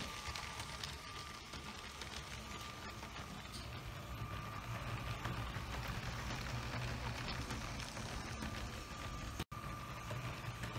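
LEGO Powered Up green cargo train running on plastic track: a quiet, steady electric motor hum with a thin whine, growing somewhat louder about halfway through, with small ticks from the wheels over the track.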